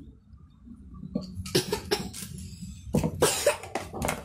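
A man coughing, in two short bouts, about a second and a half and three seconds in.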